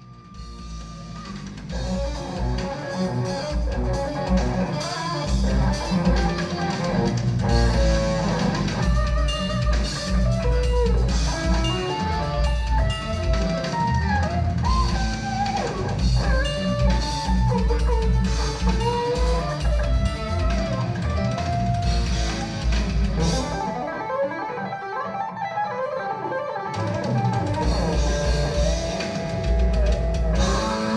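Electric guitar playing a lead melody over a drum beat. Near the end the drums and low end drop out for about two seconds, leaving the guitar alone, then come back in.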